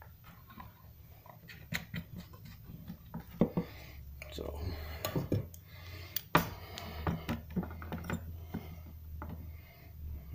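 Small clicks, taps and handling noises from work at a wooden workbench: an adhesive bottle's cap being screwed on and a fishing lure being clipped into a metal clamp. A low steady hum runs underneath, and one sharp click about six seconds in is the loudest.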